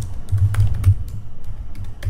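Computer keyboard typing: a quick run of irregular keystroke clicks, with a low hum underneath.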